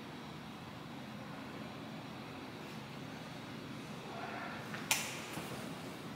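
Steady low room hum; about five seconds in, a brief rustle and a single sharp click as the costumed person moves up close to the microphone.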